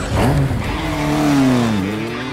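Motorcycle engine revving as the bike pulls away. The pitch climbs briefly early on, then falls off through the second half.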